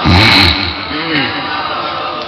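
A man's voice, the preacher's, chanting or exclaiming without clear words: a loud, short phrase at the start, then a weaker rising-and-falling phrase about a second in.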